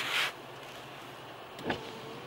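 Steady low hum inside a car, with a short rush of noise at the very start and a brief sound about three-quarters of the way through.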